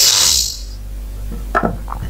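A short hiss lasting about half a second, then a low steady electrical hum, with a brief voice sound about one and a half seconds in.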